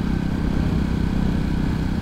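Motorcycle engine running steadily at cruising speed, heard from the rider's seat.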